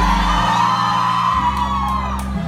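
Live band music with steady bass notes, recorded on a phone in the audience, with one long high voice held over it.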